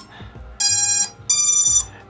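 An FPV quadcopter beeping after its battery is plugged in: two high-pitched electronic beeps, each about half a second long.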